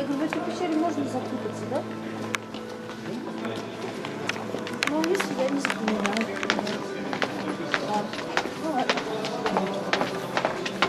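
Footsteps of a group of people walking along a cave path, with many short sharp steps, thickest from about halfway through, and indistinct chatter over a steady low hum.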